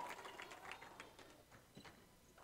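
Near silence with a few faint, scattered taps of basketball players' footsteps on a hardwood gym floor.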